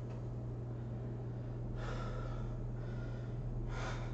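A man breathing hard while resting from exertion: one long breath about two seconds in and a shorter one near the end, over a steady low hum.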